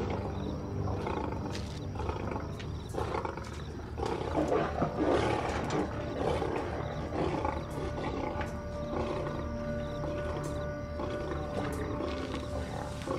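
A lion cub growling over dramatic background music, with a long held note in the second half.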